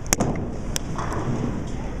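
Steady background din of a busy bowling alley, with two sharp clacks near the start, the first just after it begins and the second under a second in.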